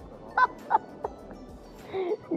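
A man laughing in two short, high, honking bursts about a third of a second apart.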